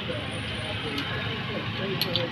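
Faint background voices over a steady hum of surrounding noise, with one light metallic click about a second in.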